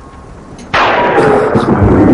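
Thunderclap sound effect: a sudden loud crack about three-quarters of a second in, carrying on as rumbling thunder.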